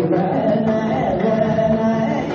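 Male Carnatic vocalist singing in raga Mohanam, holding and bending his notes in wavering ornaments, with violin accompaniment.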